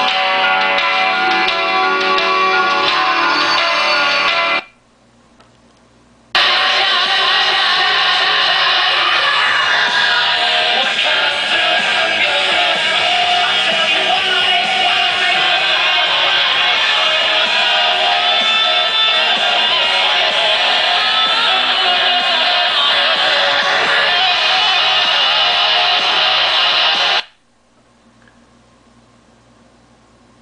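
Guitar music played through a vintage JSL-1511-S wall speaker being tested. The music stops about four and a half seconds in, resumes about two seconds later, and cuts off suddenly near the end.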